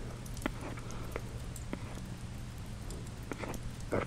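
Faint fire ambience: scattered small crackles and pops at irregular intervals over a low steady hum.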